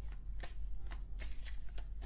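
Tarot deck being shuffled by hand: a quiet, irregular run of brief card flicks and clicks.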